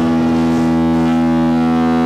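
Electric guitar played through a Top Hat amplifier, holding one sustained chord that rings steady and loud.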